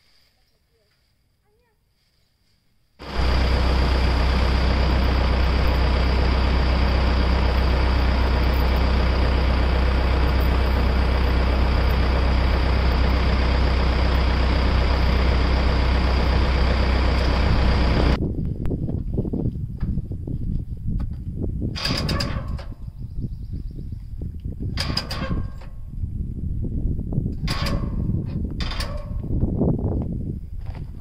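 A tractor engine running steadily close by, loud with a deep hum, coming in suddenly a few seconds in after near silence. Just past halfway it changes to a rougher, uneven machine noise broken by four short, sharp sounds.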